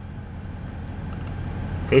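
Steady low rumble of a truck's engine running, heard from inside the cab.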